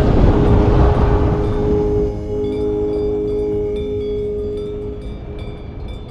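Wind rushing over the camera microphone in flight, loudest for the first two seconds and then easing, under music with a long held note and chime-like tinkling tones; the whole sound fades out toward the end.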